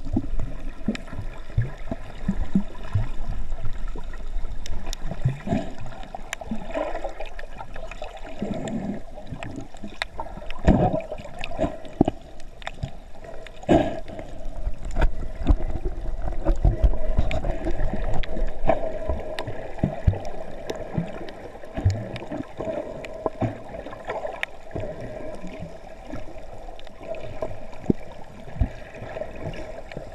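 Underwater sound picked up by a camera in a waterproof housing: muffled water movement and gurgling, with a steady tone underneath and scattered sharp clicks.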